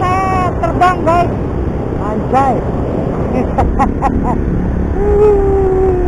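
Yamaha Byson motorcycle being ridden, its single-cylinder engine and the wind rushing past the camera making a steady noise throughout. A voice makes short wavering sounds over it, with one held note about five seconds in.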